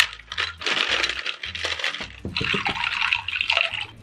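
Ice cubes tipped from a plastic ice tray clattering into a glass dish, with a rapid run of clinks and a burst of several about two and a half seconds in.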